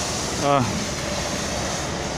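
Steady, even rushing outdoor noise, with a man saying a single short word about half a second in.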